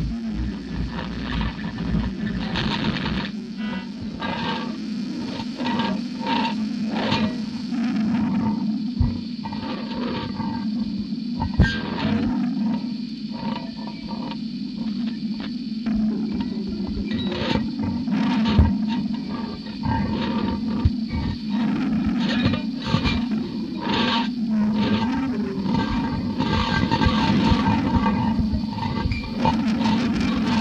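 Experimental music: a steady low drone with irregular clicks and crackles scattered over it.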